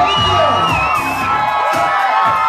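Loud dance-pop track over a club sound system, with a steady beat and long held notes, while the audience cheers and whoops.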